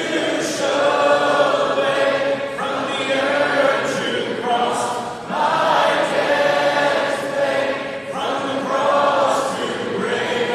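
A large crowd singing a worship song together, long held notes in phrases with short breaks between them every few seconds.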